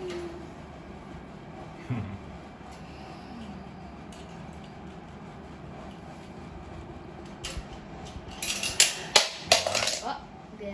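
A run of sharp clattering knocks near the end: a plastic toy car hitting the metal wire of a bird cage as a parakeet drops or knocks it.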